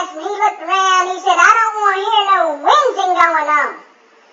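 A man talking in a high-pitched voice, almost without pause, with the pitch sliding up and down; the recogniser catches none of the words.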